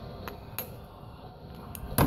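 A few light, sharp clicks of a copper-tipped knapping punch striking the edge of a stone, knocking off small flakes; the clearest click comes about half a second in and another near the end.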